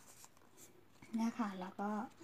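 Faint rustling of paper being folded by hand, then a woman's voice speaking Thai from about a second in, much louder than the paper.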